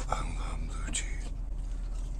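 A man's breathy, whisper-like exhales and gasps, mouth full, as the strong blue cheese hits while he chews a bite of burger. A low steady hum runs underneath.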